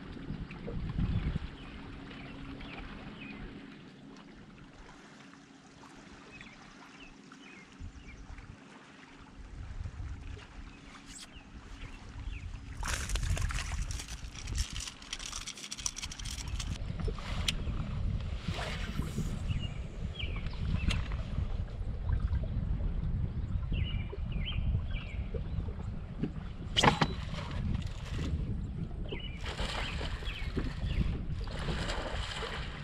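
Wind rumbling on the microphone and water slapping against a bass boat's hull, louder from about the middle on, with a faint steady hum in the first third. Splashing comes in the middle as a hooked bass is lifted out of the water, and there are a few more sharp splashes later.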